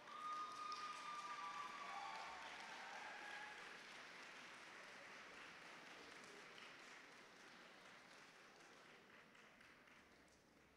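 Faint applause from a hall audience, swelling at the start with a few brief pitched calls in the first seconds, then slowly dying away.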